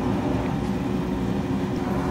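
Steady background hum and hiss with a faint steady tone, the constant noise of running room machinery.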